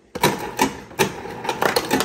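Refrigerator door ice dispenser running, with ice cubes clattering out of the chute into a cupped hand in a quick, irregular series of sharp clicks and knocks.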